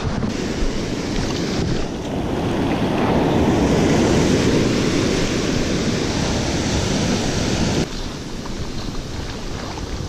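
Ocean surf washing up the beach and swirling around the legs, with wind buffeting the microphone. The wash swells to its loudest around the middle and drops off suddenly about eight seconds in.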